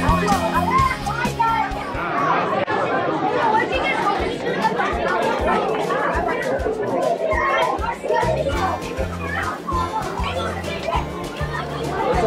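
Many children talking and calling out at once in a large hall, over background music with a bass line.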